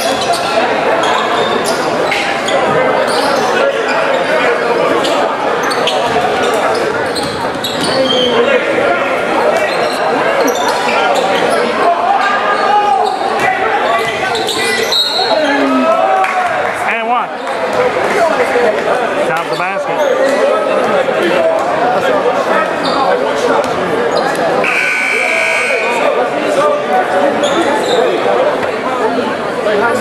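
Basketball dribbled on a hardwood gym floor over steady crowd chatter in a large gym, with a scoreboard buzzer sounding for about a second near the end, signalling a stoppage in play.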